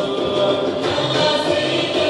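Nubian wedding folk song: a group of voices singing together over the music accompanying the dance.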